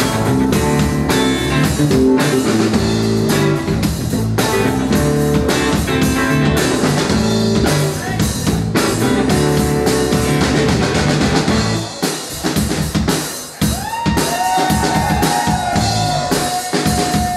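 Live rock band playing: hollow-body electric guitar, drum kit and electric bass. About twelve seconds in the low bass drops out, leaving the drums, and near the end a long held note slides up in pitch and rings on.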